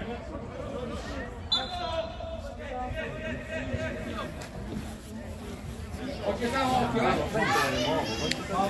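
Voices shouting and calling across an outdoor football pitch, too far off to make out words. A brief thin high tone comes about a second and a half in.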